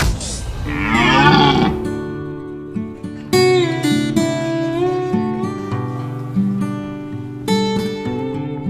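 A red deer stag roaring once, a rut call of about a second and a half near the start, over background music that carries on as acoustic guitar.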